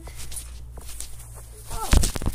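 A child bouncing on a trampoline: a few faint knocks from the mat, then a heavy thump about three-quarters of the way in as she lands on the mat after a failed front flip.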